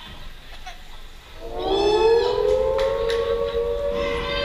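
A long siren-like tone swells up about one and a half seconds in, rises slightly in pitch, then levels off and holds.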